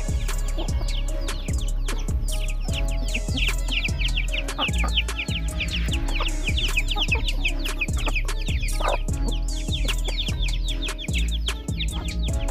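Chicks peeping in many short, falling chirps, thickest through the middle, over background music with a steady beat.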